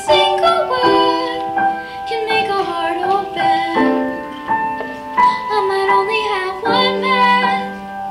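A young girl singing a solo melody into a microphone, with piano accompaniment holding chords beneath her, in a school choir's arrangement of a pop song.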